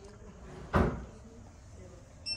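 A door thuds shut once, about three-quarters of a second in: a short, heavy knock.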